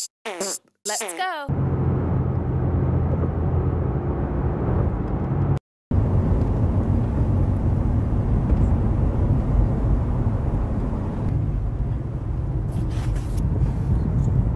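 Steady low rumble inside a car's cabin: the car's road and engine noise. It starts about a second and a half in, after a short snatch of voice, and cuts out briefly near the middle.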